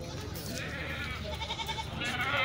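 A goat bleating once in the second half, a short wavering call, over a background of market chatter.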